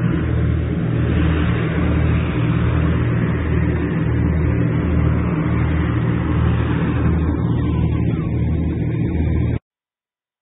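Wind buffeting the phone's microphone, a loud, steady rumble with a low, uneven throb; it cuts off suddenly near the end.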